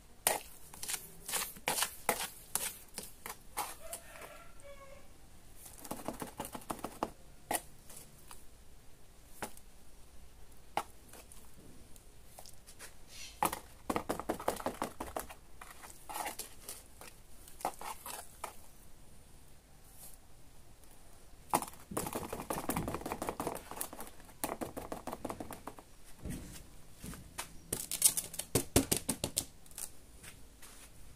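Steel trowel scraping and knocking against a plastic basin while working and scooping wet sand-and-cement mortar: runs of sharp clicks and taps broken by several longer scraping passes, with a quick burst of taps near the end.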